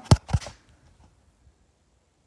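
Two quick knocks about a quarter second apart right at the start, then near silence.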